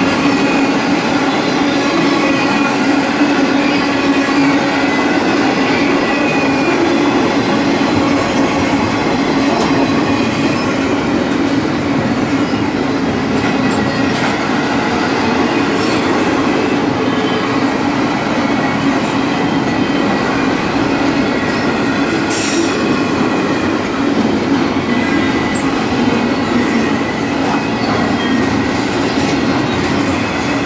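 Double-stack container train cars rolling past steadily, steel wheels on rail, with steady ringing tones over the rumble. Two sharp clicks come about halfway and two-thirds of the way through.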